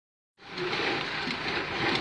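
Steady outdoor background noise with no clear tone or rhythm, starting about half a second in.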